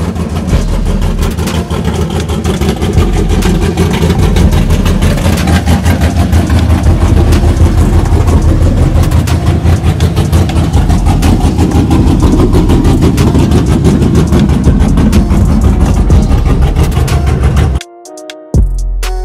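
Loud pickup-truck engine running close by, a steady, deep exhaust made of rapid even pulses. It comes in abruptly at the start and cuts off suddenly near the end.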